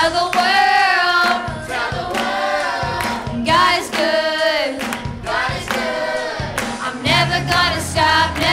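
Youth vocal group singing a worship song, several voices together.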